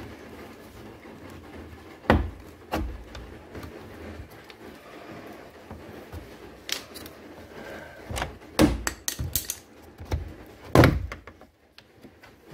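Plastic door trim panel of a 2019 Kia Optima being pried off its retaining clips with a plastic trim tool: a series of sharp snaps and clacks as the clips let go, two in the first three seconds, a quick cluster about eight to nine and a half seconds in, and the loudest near eleven seconds.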